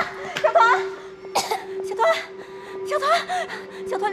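Anxious voices calling out to a child, with short coughs from a boy just pulled out of the water, over a steady held tone.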